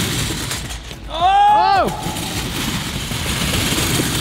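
Rattling rumble of a homemade scooter fitted with over a hundred cheap scooter wheels on two long axles, rolled up a wooden ramp. About a second in, a person lets out a short yell that rises and falls in pitch, the loudest sound here.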